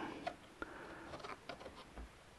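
Faint, scattered light ticks and taps from hands handling a black plastic boat portlight frame.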